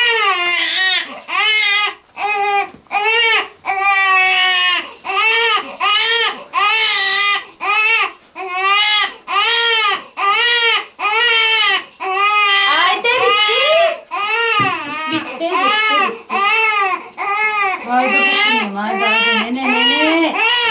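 Newborn baby crying: a long run of short wails, each rising and falling in pitch, about one every half second to second, turning lower and more drawn-out near the end.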